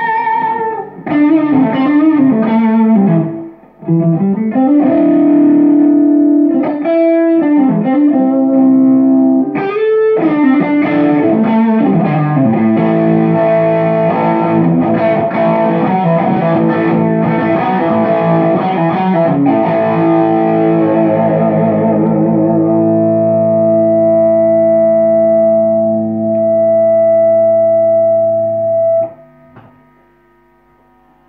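Suhr Classic electric guitar played through a Dr. Z Maz 8 tube amp with a slightly distorted tone: single-note lead phrases with string bends, then chords left to ring and sustain, cut off sharply near the end.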